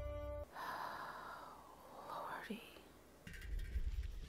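Film soundtrack: a held music chord cuts off suddenly about half a second in. A faint airy rushing follows, sweeping down and back up, and a low rumble comes in just after three seconds.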